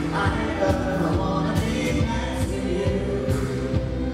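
A man singing live into a microphone over a pop band, with a steady drum beat and backing voices.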